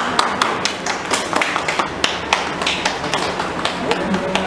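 Scattered hand claps from a small audience, irregular and several a second, as each award is handed over.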